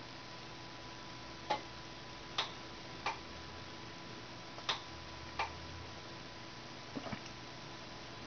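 Pentium 4 desktop computer booting through its BIOS: a faint steady hum with a thin whine, broken by about seven sharp clicks at irregular intervals.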